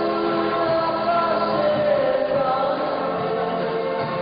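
A group of voices singing a song together with musical accompaniment, holding long notes.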